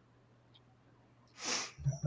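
Near silence with a faint hum, then a short breathy noise from a person, about a third of a second long, about a second and a half in, just before a man starts to speak.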